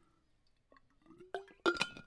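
Two light clinks from a water bottle and its screw cap in the second half, each followed by a short ringing tone.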